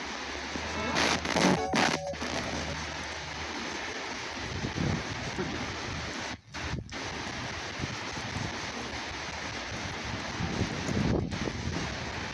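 Ghost-box radio scanner sweeping through stations: a steady hiss of static, broken by brief snatches of voice and music about a second in and by short cut-outs twice near the middle and once near the end.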